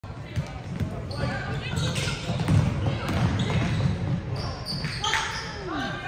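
Sound of a basketball game in a gym: a ball bouncing at irregular intervals on the hardwood floor, amid overlapping voices that echo around the large hall.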